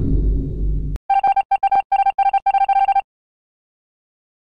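The fading tail of a deep, bass-heavy sound effect cuts off about a second in. It is followed by about two seconds of short electronic beeps, all on one pitch, in an uneven rhythm.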